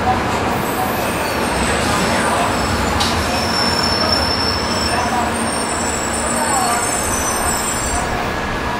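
Shinkansen 700 series train running along a station platform and slowing, a steady rumble of the cars going by. In the last few seconds, thin high-pitched squeal lines appear over it.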